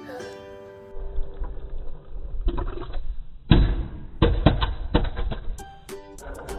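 Background music with muffled knocks and rumbling from a phone camera being handled, the loudest knock about three and a half seconds in and several more in the following second or so.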